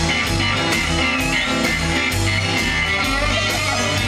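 Live country band in an instrumental break: electric guitar leading with a bent note about a second in, over plucked upright bass and a steady beat.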